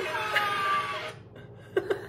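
Women laughing: a high, drawn-out laughing note in the first second, a short lull, then a fresh burst of laughter near the end.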